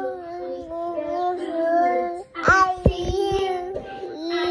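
Singing in a young child's voice, long held notes that waver slightly in pitch. About halfway through come a few handling knocks on the phone.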